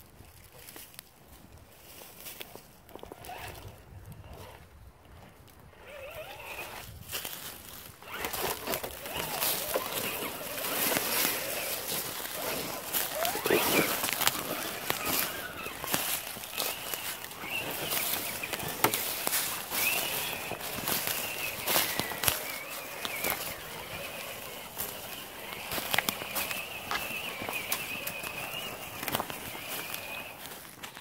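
Electric motor and gear whine of RC scale crawlers driving over logs and dry leaves, a thin wavering whine rising and falling with the throttle, mixed with crunching leaves and footsteps. Quiet at first, busier from about eight seconds in.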